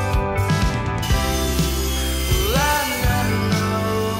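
Background music with a steady beat, in which one note slides upward about two and a half seconds in.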